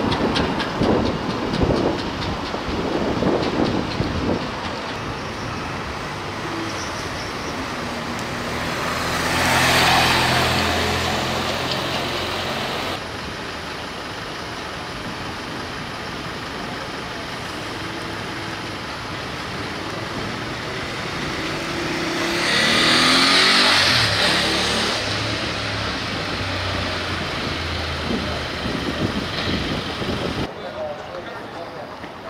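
City street traffic, with vehicles passing close by. The two loudest pass-bys swell and fade about ten and twenty-three seconds in, each with engine hum and tyre noise.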